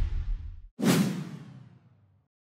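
Title-sequence whoosh transition effect about a second in, sweeping and dying away, after the decaying tail of a musical sting.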